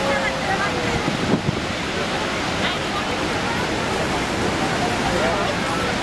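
Niagara Falls thundering down close by, a loud, steady, dense rushing roar of falling water heard from a boat at its base. A brief knock comes about a second in.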